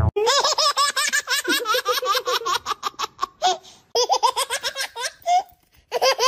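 High-pitched human giggling in long runs of quick laughs, about eight to ten a second, breaking off briefly twice.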